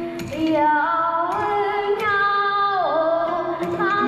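Ca trù singing: a young woman holds a long, ornamented sung phrase whose pitch wavers and dips near the end. Sharp wooden clicks of the phách clappers and low plucked lute notes, typical of the đàn đáy, accompany it.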